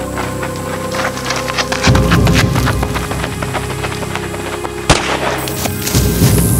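Music with a steady pulsing low bass, overlaid by a dense run of sharp cracks and clicks, with one louder bang about five seconds in.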